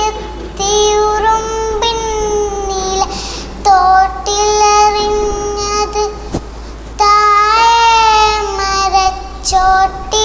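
A young girl singing a Malayalam song solo, in phrases of long held notes that waver slightly in pitch, with short breaks for breath between them.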